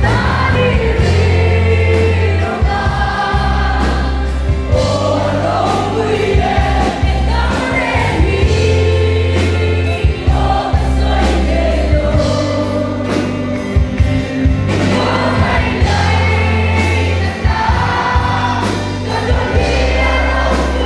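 Live gospel worship band: a woman singing lead into a microphone over a drum kit, guitars and a heavy bass line, picked up from the audience.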